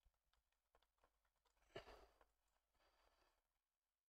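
Near silence, with faint small clicks and scrapes of a small screwdriver turning a screw into a plastic model part. One brief soft rushing noise comes about two seconds in.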